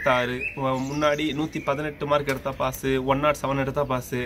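A man talking continuously, with a bird chirping briefly in the background.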